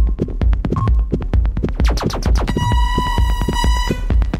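Techno music: a steady kick drum about twice a second under fast clicking percussion, with a held synth note coming in about halfway through.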